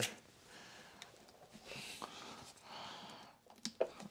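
Two faint, slow breaths through a stuffy nose, with a few light clicks of the plastic vacuum housing being handled.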